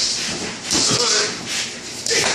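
Scratchy scuffing and rubbing as a pit bull tugs at a broom's bristle head, the bristles and the dog's claws scraping on a wooden floor. A short voice-like sound comes just before a second in.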